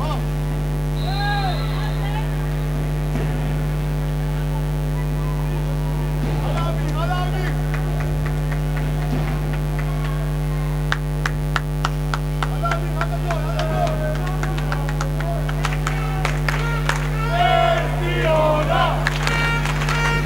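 A steady electrical mains hum on the broadcast sound, with indoor handball court noise. In the second half, a run of sharp knocks from the game joins in, several a second, along with short squeaks and calls.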